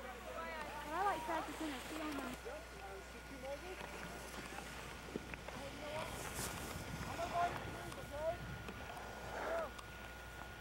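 Faint, indistinct talking over a steady low hum: one stretch of speech in the first two seconds and short bits again near the end.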